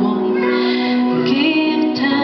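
A woman singing lead in a live worship song, holding sustained notes over instrumental accompaniment.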